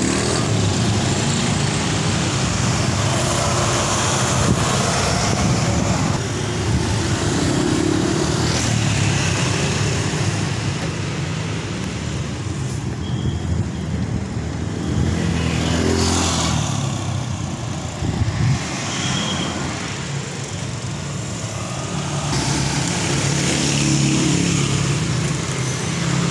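Street traffic heard from a moving becak: motor scooters and cars passing, over a steady rumble of road noise. About halfway through, one engine passes close and rises in pitch.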